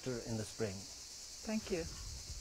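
A steady, high-pitched chorus of insects, with a few brief snatches of a man's voice near the start and again about halfway through.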